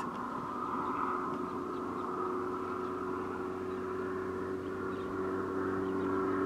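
Steady hum of a car's engine idling, heard inside the cabin: several held low tones under a band of hiss, with no shot or impact.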